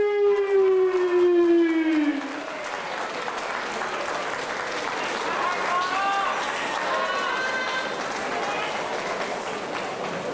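A ring announcer's long drawn-out call, its pitch sliding down and ending about two seconds in, followed by steady crowd applause with a few short shouts from the audience.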